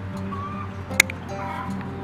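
One sharp snip of dog nail clippers cutting through a thick black dog nail, about a second in, over quiet steady background music.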